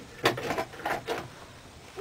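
A few short knocks and rustles of things being handled, bunched in the first second, then quieter.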